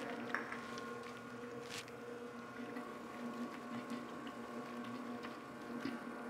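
Commercial planetary stand mixer running at first speed, its paddle working a wet, high-hydration ciabatta dough: a steady, quiet motor hum, with a faint click near the start and another about two seconds in.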